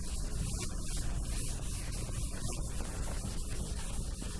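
Whiteboard eraser rubbing across a whiteboard in repeated wiping strokes, wiping off marker writing.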